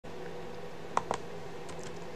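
Two quick clicks of a computer mouse or keyboard about a second in, over a faint steady electrical hum.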